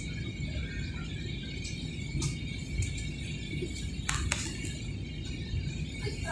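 Steady low rumble of a jet airliner's cabin in flight, with a couple of sharp clicks about four seconds in.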